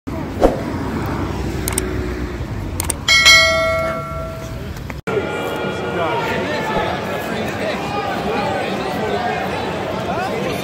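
Street noise with a thump just after the start, then a bell struck once about three seconds in, ringing and fading over a second and a half. After a sudden cut, a football stadium crowd's steady hubbub of chatter.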